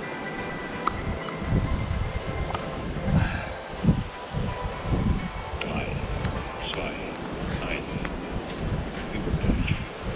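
Wind gusting on the microphone in irregular low rumbles, with scattered small clicks and rustles of movement.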